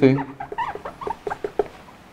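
Whiteboard marker squeaking across the board while a word is written: a quick, irregular run of short squeaks, one for each pen stroke.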